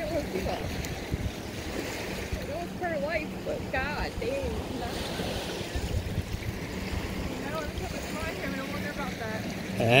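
Steady wash of surf on the beach, with wind rumbling on the microphone.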